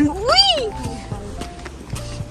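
A person's short high-pitched whoop, rising and then falling in pitch, about half a second in, over background music with held notes.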